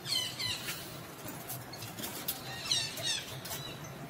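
Macaque squealing: two pairs of short, high calls that slide down in pitch, one pair at the start and another about three seconds in, with a few light clicks between.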